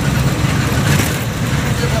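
Heavy truck's diesel engine running on the move, heard from inside the cab: a steady low drone with road noise.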